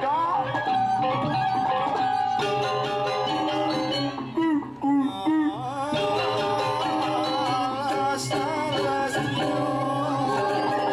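Balinese gong kebyar gamelan playing dance-drama accompaniment: bronze metallophones, gongs and drums sounding together in steady, ringing melodic lines.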